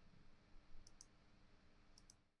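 Near silence: room tone with a faint steady hum, broken by two pairs of short, sharp high clicks, one pair about a second in and another near the end.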